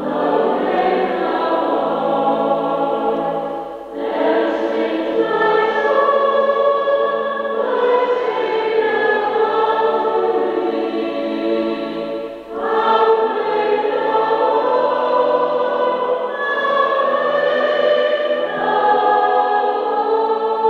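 A choir singing in long phrases, with brief breaks between phrases about four and twelve and a half seconds in.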